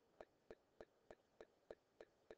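Faint, regular ticking, about three ticks a second, over near silence.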